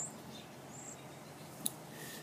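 Faint outdoor background with two short, high bird chirps, one at the start and another a little under a second in, and a single click near the end.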